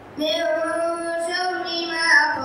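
A boy's voice chanting Quranic recitation into a microphone, coming in a moment after the start and holding one long drawn-out note.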